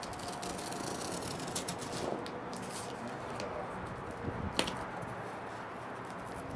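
Cardboard and plastic-bagged parts rustling and knocking as hands work at a taped cardboard sleeve inside a parts box, with one sharp click a little past four and a half seconds in. Steady wind noise on the microphone underneath.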